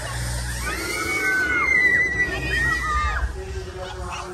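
Dinosaur shrieks from a theme-park dark ride's sound effects: several long, high cries that rise and fall, over a low rumble.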